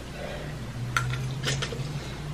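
A few light clicks and taps of a fork against a plate as a forkful of instant noodles is lifted to the mouth, over a steady low hum.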